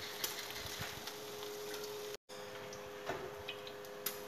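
Faint steady hiss and low hum from a kitchen with a lit gas stove burner, with a few light clicks of utensils. The sound drops out briefly about halfway through.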